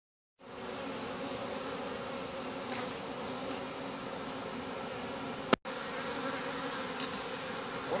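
Honeybee swarm humming steadily as the bees march into a nuc box. A single sharp click with a brief dropout interrupts the hum a little past halfway.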